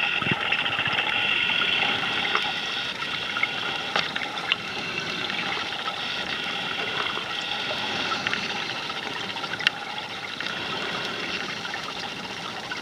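Underwater ambience picked up by a submerged camera: a steady water hiss with a few sharp clicks, fading slightly towards the end.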